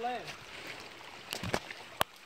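A voice finishes a word, then footsteps crunch on leaf litter and rock, with a couple of sharper steps about one and a half seconds in, over a faint trickle of creek water.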